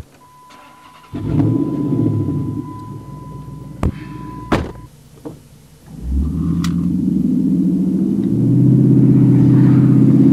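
2009 Dodge Challenger SRT8's 6.1-litre Hemi V8 heard from inside the cabin: it starts about a second in and settles into idle, with a steady electronic chime tone and two sharp clicks. From about six seconds in the engine pulls away, its note climbing and then holding a loud, steady drone.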